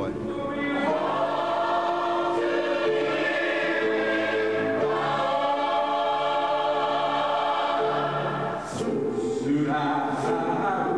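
A choir singing a slow hymn in long held chords, with a short break between phrases a little before the end.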